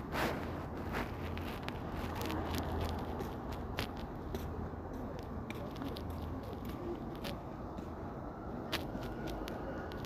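Scattered small clicks and rustles from close handling over a steady low background hum, with a louder rustle right at the start.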